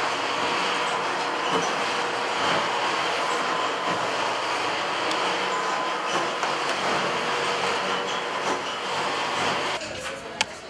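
Bakery oven running: a steady, loud rushing noise with a faint hum, with one or two faint knocks about six seconds in.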